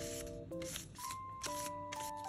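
Paper rustling in several short strokes as a paper cutout brush is rubbed back and forth over paper cutout hair, over gentle background music of held notes and chords.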